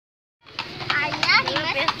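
A young child's voice chattering, starting about half a second in, over the intermittent clip-clop of a carriage horse's hooves.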